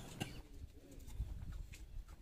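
Quiet background with a bird cooing faintly, and a few soft clicks.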